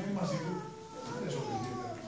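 A performer's high, drawn-out, meow-like vocal wail, a few long cries that slide downward in pitch.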